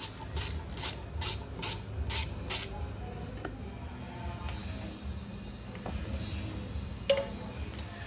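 Hand ratchet with a half-inch socket backing off the nuts on a fuel pump stand, its pawl clicking in a quick even run of strokes, about two and a half a second, that stops about two and a half seconds in. A single sharp knock near the end as the parts are handled.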